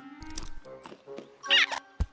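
Cartoon rodent squeaks and chatter from the animated squirrels, ending in a loud warbling squeal about one and a half seconds in, over orchestral film score. A short thump comes right at the end.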